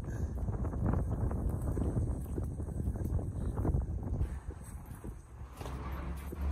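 Wind buffeting a phone microphone: an irregular low rumble with crackling, dipping briefly near the end.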